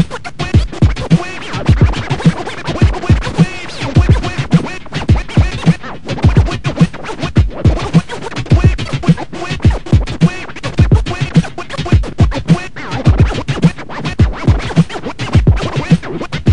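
Turntable scratching through M-Audio Torq digital vinyl software: a hand moves the control record back and forth in quick strokes, making sharp rising and falling scratch sounds over a hip-hop beat with a steady kick drum.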